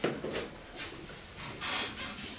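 Marker writing on a whiteboard: several short scratchy rubbing strokes, the first the loudest.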